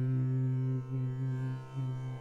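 A steady low musical drone, the held final note of the bhajan's accompaniment, dips twice and fades away as the song ends.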